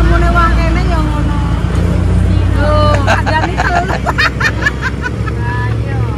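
A motor vehicle's engine idling close by, a steady low drone that drops away right at the end, with women's voices talking over it.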